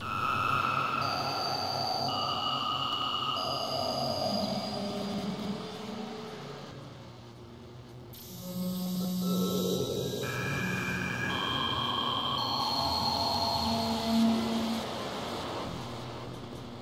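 Software modular synthesizer patch in VCV Rack playing ambient music. Its macro oscillators are set to drum and vowel models. Layered sustained tones step to a new pitch every second or so over a low drone; the sound thins out for a couple of seconds around the middle, then a low tone comes back in.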